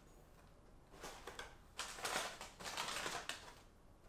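Packaging rustled and handled while items are unpacked from a cardboard box: a short burst about a second in, then a louder stretch of about a second and a half.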